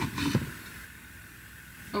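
Brief soft handling noises from working a power cord and phone at a counter, then a low steady hiss of room noise.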